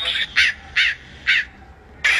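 Three short, harsh caws like a crow's, about half a second apart, each rising and then falling in pitch.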